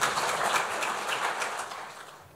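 Audience applauding, the clapping thinning out and dying away near the end.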